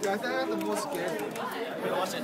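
Several people chattering at once, indistinct overlapping voices.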